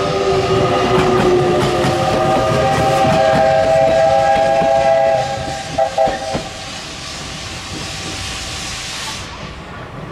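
Steam locomotive whistle blowing one long blast of several steady tones together, then two short toots. Afterwards comes a steady hiss of steam venting from the cylinder drain cocks as the engine runs in, stopping near the end, with rail clatter underneath.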